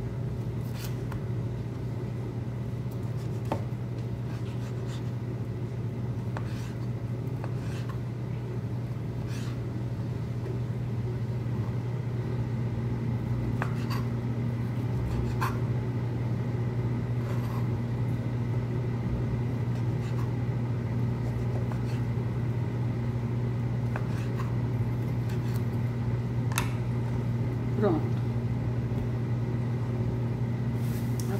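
Kitchen knife cutting through a smoked sausage onto a plastic cutting board, making scattered short clicks as the blade meets the board, over a steady low machine hum.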